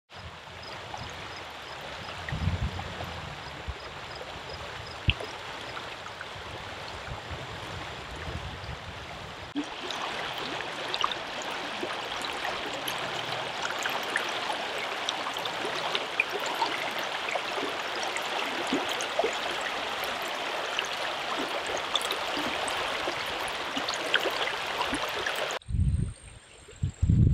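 Steady rush of a shallow river running over rocks and riffles, growing louder about ten seconds in and cutting off abruptly near the end.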